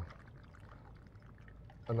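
White rum poured from a bottle with a pour spout into a glass packed with ice, a faint steady trickle.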